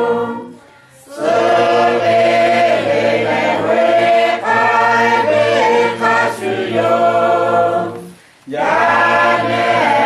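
A group of voices singing together in phrases, with two short breaks between phrases: one about a second in and one around eight seconds in.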